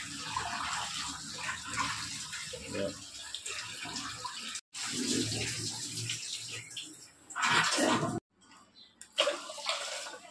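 Kitchen tap running and water sloshing as rice is rinsed in a pressure cooker pot, with rinse water poured off into the steel sink. The water is loudest a little before eight seconds in, then stops abruptly.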